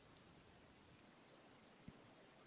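Near silence, broken by a faint sharp click just after the start, a fainter second click, and a soft low thump near the end.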